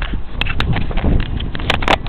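Camera handling noise: sharp knocks and rubs of fingers on a handheld camera, in uneven pairs, over a low rumble.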